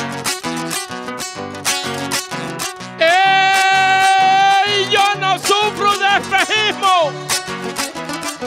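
Acoustic guitar strumming a steady repeating accompaniment. About three seconds in, a man's voice comes in loud on a long held wordless note, then wavers and slides through several notes until about seven seconds in. This is the sung vowel lament that opens a Panamanian décima.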